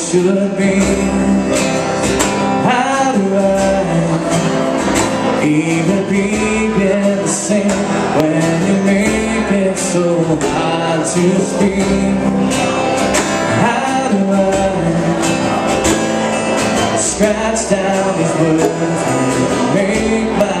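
Small country band playing live: strummed acoustic guitars with a man singing the lead.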